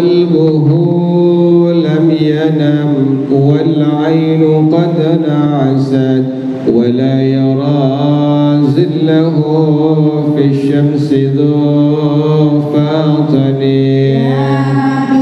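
A man chanting into a microphone, drawing out long, slowly moving melodic notes with a brief breath about halfway through.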